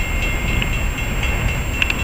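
A loaded unit coal train rolling on the rails: a steady low rumble of wheels on track.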